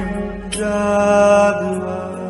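Devotional chant music of long held notes, the pitch shifting about half a second in and again near the end.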